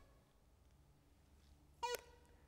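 SNAGazoo swing-training club giving its audible feedback: one short, sharp sound with a brief ringing tone near the end. It is the signal that the wrists have hinged the right amount into the L-shape at the top of the backswing. Otherwise near silence.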